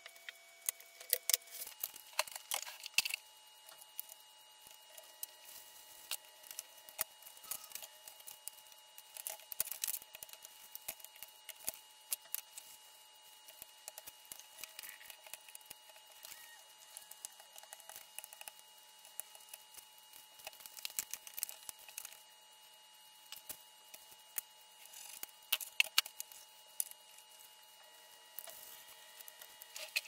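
Scattered light taps, clicks and rustles of paper and craft tools being handled on a desk: an acrylic stamp block pressed onto an envelope, and the paper envelope being folded.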